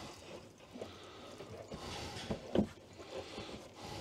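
Faint handling noise of a fabric curtain being worked by hand into a plastic curtain clip: soft rustling with a few light taps and clicks.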